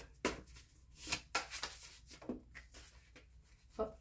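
Playing-card-sized tarot cards being handled and laid on a table: a scattering of short, crisp flicks and taps of card stock.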